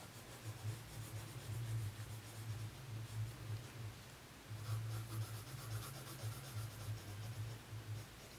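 Faint scratching of a Prismacolor coloured pencil shading on paper, a little stronger in the second half, over a low steady hum.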